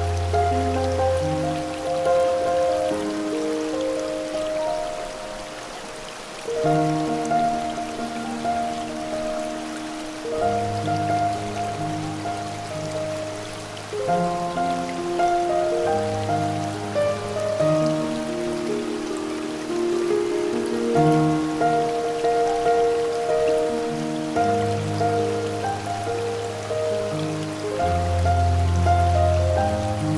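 Slow, soft piano music with low bass notes every few seconds, layered over the steady rush of a waterfall.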